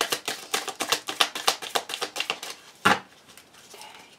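A deck of cards shuffled by hand: a quick run of card clicks and slaps, ending with a sharper snap about three seconds in.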